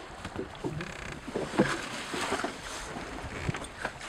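Water slapping against the hull of a small open boat at sea, with wind on the microphone and scattered irregular knocks.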